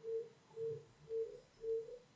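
A faint, short low-pitched tone repeated evenly about twice a second.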